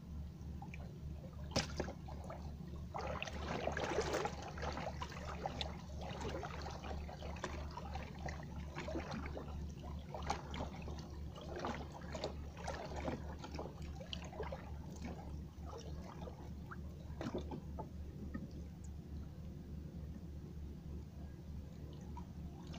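Water sloshing and dripping, busiest about three to five seconds in, over a steady low pulsing hum from a motor.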